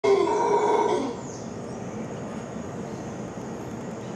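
Mantled howler monkey roaring, loud for about the first second and then cutting off, leaving a lower steady din from the forest.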